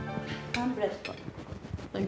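Cutlery and china clinking at a dining table: scattered light clicks and knocks of silverware on plates as people eat and dishes are handled.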